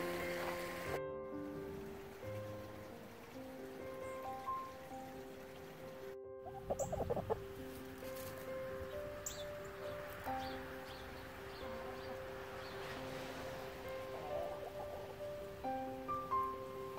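Background music of held, sustained notes, with hens clucking briefly about seven seconds in and again near the end.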